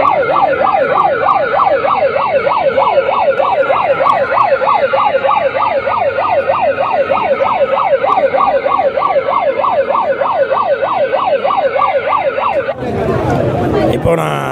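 Electronic siren of a handheld red toy emergency beacon, yelping in a fast warble that rises and falls about three times a second, then cutting off abruptly about a second before the end.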